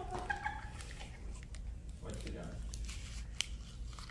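Quiet room sound with brief, faint voices near the start and again about two seconds in, and scattered small clicks and taps, the sharpest a single tick about three and a half seconds in.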